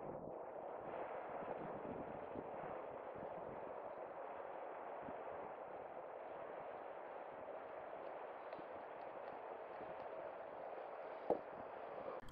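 Faint, steady background hiss, with one short knock near the end as the small brass powder dispenser is handled.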